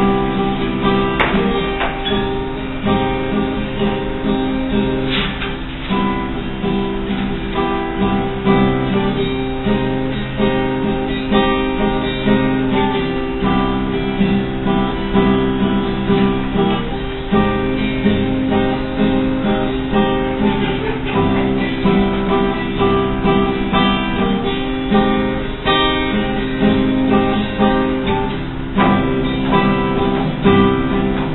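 Acoustic guitar playing chords steadily, an instrumental opening with no singing yet.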